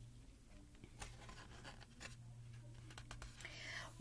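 Faint handling of a stiff cardboard board book as a page is turned: a few soft taps and rustles about a second in, then a short soft hiss near the end.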